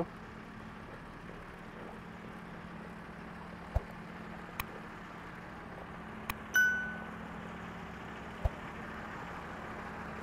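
Quiet city street at night: a steady low hum over faint traffic noise, with a few soft ticks. A little past the middle, a single short metallic ding rings out and fades within about half a second.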